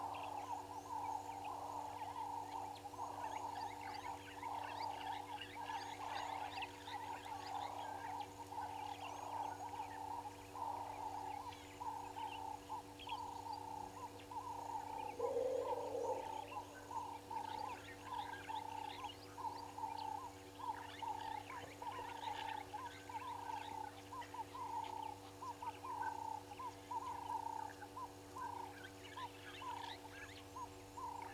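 Chorus of frogs calling, with many short repeated calls overlapping in a continuous run and higher chirps above them. About halfway through, a louder, lower-pitched call lasts about a second. A faint steady electrical hum sits beneath.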